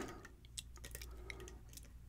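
A steel lock pick working inside a brass lock cylinder held under tension, giving a few faint, scattered clicks.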